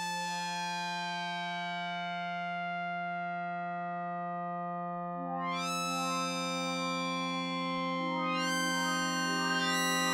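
Polyphonic synthesizer holding a low note, with further notes added about five and eight seconds in to build a sustained chord; the tone brightens with a sweep as each new note enters.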